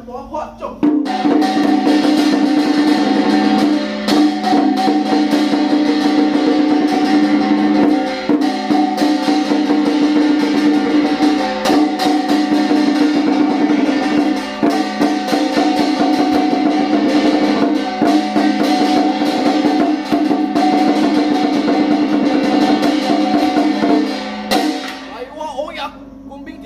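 Temple drum and brass hand gong beaten together in a fast, continuous roll, the gong ringing on steadily under the drum strokes: ritual accompaniment for a spirit medium's trance rite. It starts about a second in and stops shortly before the end.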